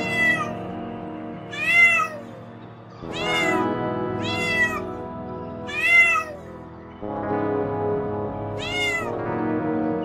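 A cat meowing six times, each meow rising and then falling in pitch, over background music.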